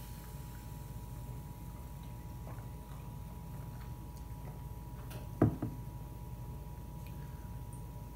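A glass of cola with ice being sipped and then set down on a countertop: a few faint small ticks, then one sharp knock about five and a half seconds in, over a steady faint room hum.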